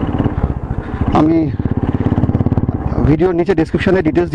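Motorcycle with an aftermarket exhaust cruising at a steady speed, its engine note even with a rapid, regular exhaust beat. A voice speaks over it briefly about a second in and again near the end.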